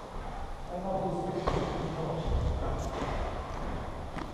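Footsteps and thuds on a boxing ring's padded canvas, with a heavy thud a little past the middle, while a man's voice talks in the gym.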